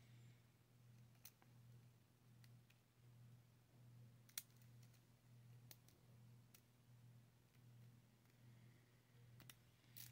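Near silence with a few faint, sparse clicks as a lock pick works the pin stack of a brass mortise cylinder under light tension, the sharpest about four and a half seconds in, over a faint low hum.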